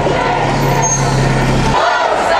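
A large road vehicle's engine running with a steady low drone, over street crowd noise. The drone stops abruptly near the end.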